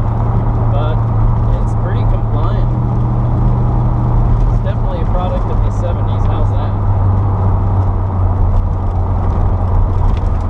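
C3 Corvette's V8 engine and road noise heard from inside the cabin while driving: a steady low drone that drops a little in pitch about halfway through.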